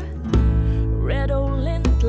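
Acoustic band music: strummed acoustic guitar over sustained bass notes, with sharp djembe hits, and a wavering wordless vocal line that comes in about halfway.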